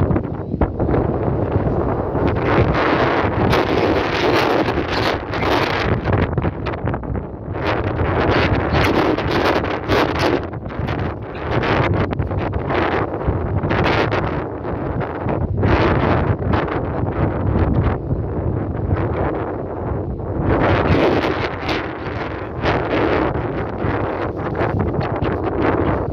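Strong wind buffeting the microphone: a loud, heavy rumble that runs throughout, with gusts of rushing noise that swell and ease every few seconds.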